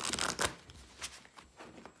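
A deck of oracle cards shuffled by hand: a dense burst of card rustling in the first half second, then a few softer clicks and slides of the cards.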